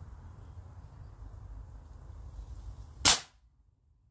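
One sharp crack about three seconds in: a shot from a full-power air rifle, with a standard .22 lead pellet striking a thin metal plate. The pellet dents the plate without going through.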